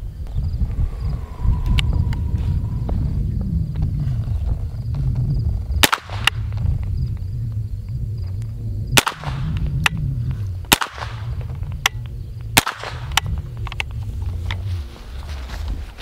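A Smith & Wesson M&P 15-22 pistol in .22 LR being fired: about eight sharp, light cracks at an uneven pace, mostly in the second half, as a red dot is zeroed. A steady low rumble runs underneath.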